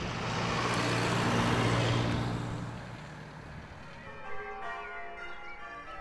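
A motor car passing: a swell of road and engine noise over a low hum that peaks about two seconds in and fades away. In the second half, church bells ring faintly, as in change ringing.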